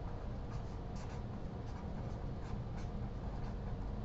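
Felt-tip marker writing on a sheet of paper, a series of short strokes as letters are drawn, over a steady low hum.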